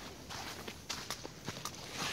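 Footsteps on a narrow dirt trail, a run of short, irregular scuffs and ticks from walking at a quick pace.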